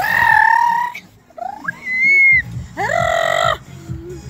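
Three high-pitched shrieks from children: a loud held one at the start, a rising squeal before the middle, and a rising shout near the end. Under them a dance track's bass beat drops out for a couple of seconds and comes back.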